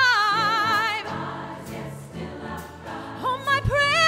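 A woman soloist holds a sung note with wide vibrato that falls away about a second in, over a choir's soft sustained chord. Near the end her voice comes back in with a rising phrase.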